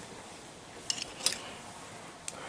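Quiet room tone with two brief, light clinks about a second in, half a second apart.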